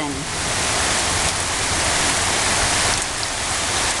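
Steady rain falling, an even hiss at a constant level.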